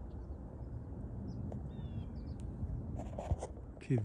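Quiet rural morning ambience: a steady low rumble with a few faint high chirps, and a short rustle and a click about three seconds in.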